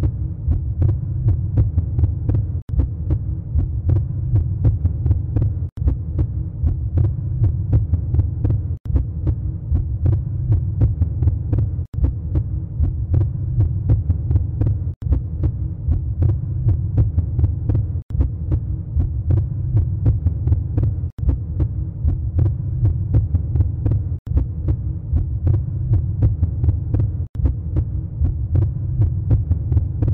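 A low, throbbing drone that repeats as a loop, breaking off briefly about every three seconds.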